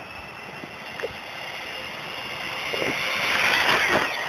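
High-pitched whine of a brushless-motor on-road RC car at speed, growing steadily louder as it approaches and peaking near the end as it passes, at around 50 mph.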